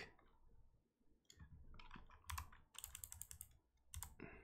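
Faint computer keyboard keystrokes: a few scattered clicks after about a second, then a quick run of keystrokes near the end.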